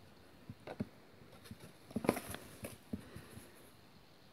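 Faint rustling and light clicks of handling in a small room, with a short burst of rustling about two seconds in.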